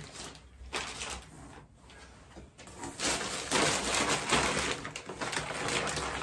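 Plastic packaging bags rustling and crinkling as parts are handled, faint at first and louder from about halfway through.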